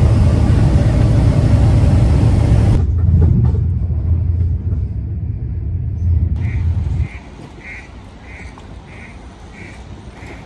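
Steady airliner cabin drone, a loud low rumble of engines and airflow, that cuts off about three seconds in to a duller low rumble of a moving train. After about seven seconds the rumble drops away, leaving a quiet stretch with about seven short, evenly spaced high-pitched sounds.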